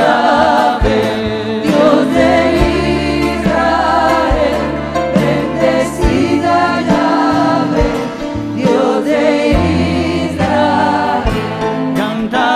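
Christian worship song: a choir singing over sustained bass and accompaniment, with a slow, soft beat.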